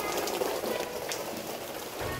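Steady rain falling on a wet concrete alley, an even hiss with a few sharper drops.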